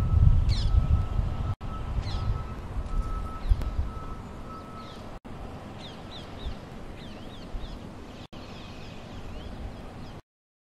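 Birds chirping in short falling notes, repeated throughout, over a low outdoor rumble that is strongest in the first few seconds. A faint steady whine runs through the first half, and the sound cuts out for an instant three times.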